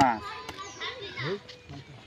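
People talking: a short spoken word at the start, then fainter voices in the background.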